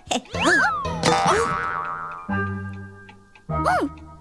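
Cartoon sound effects: springy, sliding-pitch boings and short squeaky vocal glides, then a steady ringing set of tones that fades out over about a second, with another sliding vocal sound near the end.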